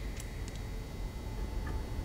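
A few faint clicks of metal parts handled as a hole-saw adapter is fitted onto a hole saw, over a low steady room rumble.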